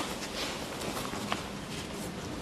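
Soft, scattered thumps and shuffles of a barefoot martial artist in a gi getting up from a roll and stepping on the dojo mats, with a couple of faint light knocks.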